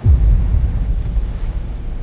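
Wind buffeting the microphone: a loud, low, rumbling noise that starts suddenly and fades slowly.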